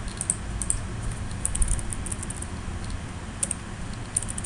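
Computer keyboard keystrokes as code is deleted: scattered clicks, then a quick run of taps about one and a half seconds in, over a low background hum.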